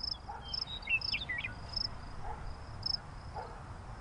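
Background meadow ambience of chirping crickets: short high chirps repeating every half second to a second, with a brief flurry of lower chirps about a second in.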